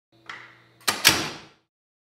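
A faint low hum and a light click, then two sharp clacks in quick succession about a second in, each ringing off briefly.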